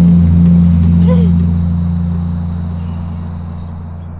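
A low, steady drone from the documentary's score, several deep tones held together, slowly fading away.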